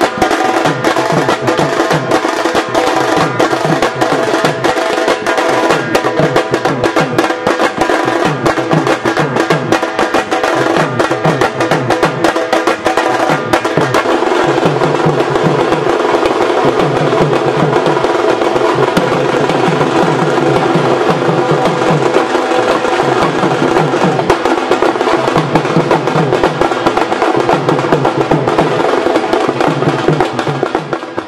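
Dhol drums played fast and continuously, with sustained melodic tones sounding along.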